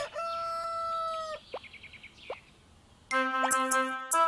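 Cartoon rooster crowing, its final long note held until about a second and a half in, followed by two short sliding sounds. A bright children's song starts about three seconds in.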